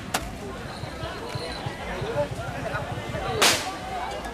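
Two loud cracks of a ritual whip, a sharp one just after the start and a louder one about three and a half seconds in, over a crowd murmuring.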